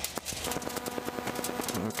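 The A22 Foxbat's Rotax 912 engine running at low power as the aircraft lines up, a steady hum with a fast regular pulse.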